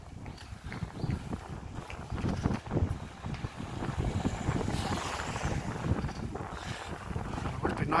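Wind buffeting the microphone of a camera on a moving bicycle, an uneven gusty low noise, with a car passing by about halfway through.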